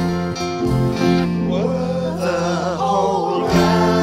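Hymn music with acoustic guitar accompaniment; a singing voice with a wavering vibrato comes in about halfway through.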